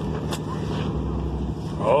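A low, steady rumble of an idling motor vehicle engine, with a man's voice starting right at the end.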